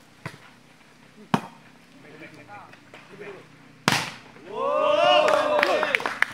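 A volleyball struck by players' hands and arms during a rally, heard as sharp smacks: a light one just after the start, a loud one about a second and a half in, and another loud one about four seconds in. Several players then shout over one another.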